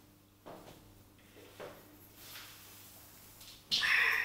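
Footsteps on a hard floor, about one a second, followed near the end by a louder scrape and creak as an office chair is sat in.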